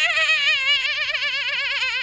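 A woman's voice imitating a baby lamb's bleat: one long, high "baa" held through, with a fast, even quaver in pitch.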